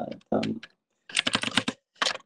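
A quick run of clicks lasting under a second, like typing on a computer keyboard, just after a voice trails off.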